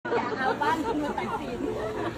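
Speech only: people talking and chattering.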